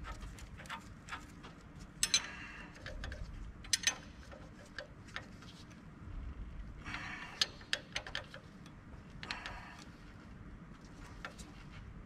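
A wrench tightening a 22 mm fitting on the engine without forcing it: short runs of clicking and metal clinks every second or two, at a low level.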